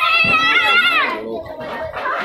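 A child's loud, high-pitched shout, held for about a second with a wavering pitch and falling away at the end, followed by lower voices.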